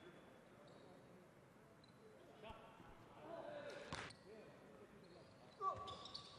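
Faint basketball-arena ambience: a basketball knocking on the hardwood court twice, about two and a half and four seconds in, the free-throw shooter's pre-shot dribble, with faint distant voices.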